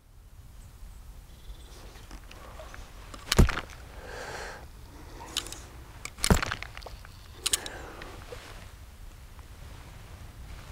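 Faint outdoor background with a few scattered sharp knocks and clicks, four or so in all, the loudest a little after three seconds and just after six seconds.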